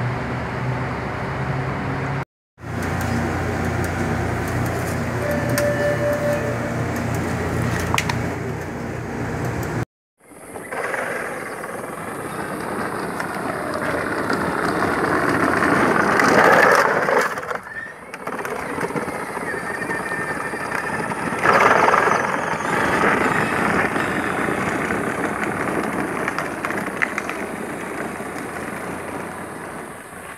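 A steady low engine hum, then a child's battery-powered ride-on buggy rolling on asphalt, its hard plastic wheels rumbling and swelling louder twice.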